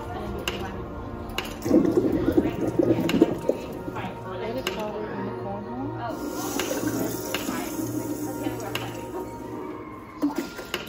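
Indistinct voices with music playing, and scattered light clicks.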